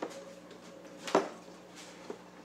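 A single sharp knock about a second in, with a faint click at the start, over a faint steady hum.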